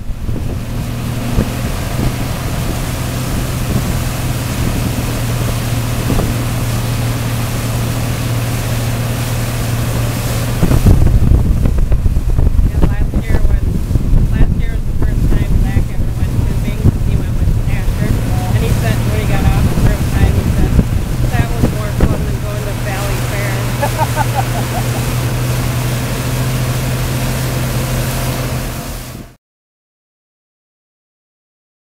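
Twin Evinrude outboard motors running steadily at speed on a boat towing tubes, with wind buffeting the microphone and the rush of the wake. The wind and water noise gets louder and rougher from about a third of the way in, and the sound cuts off abruptly just before the end.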